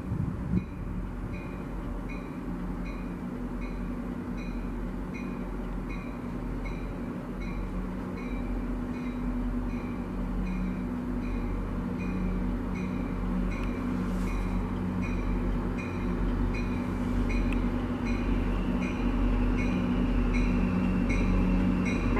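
Diesel locomotive-hauled train approaching, its engine running steadily and growing gradually louder. A bell dings steadily, a little over once a second, all the while.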